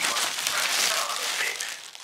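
Paper sandwich wrapper crinkling and rustling as a toasted sandwich is handled and lifted out of it, easing off near the end.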